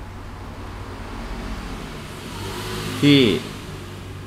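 A felt-tip marker writing on paper, faint scratchy strokes heard mostly about two seconds in, over a steady low hum; a short spoken word comes near the end.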